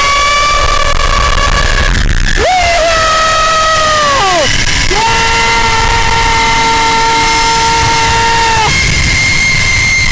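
A man giving several long, held screams as he rides down a zipline, the pitch dropping at the end of each. Under them, wind rushes over the microphone.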